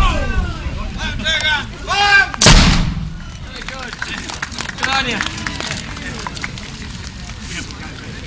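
An old artillery gun firing: one loud blast about two and a half seconds in, following the tail of an earlier shot at the start.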